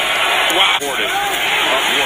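Speech only: a man talking, as in football broadcast commentary, with a brief break just under a second in.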